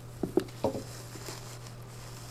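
Hands pulling radishes and their leafy tops out of perlite growing medium: a few soft rustles and crunches in the first second, then only faint handling sounds.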